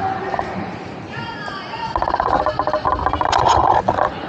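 Indistinct voices talking, quieter about a second in and louder and busier in the second half.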